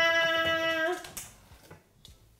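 A woman's voice holding the long final note of a sung "ta-daaa" fanfare, which stops just under a second in. A faint click follows, then near quiet.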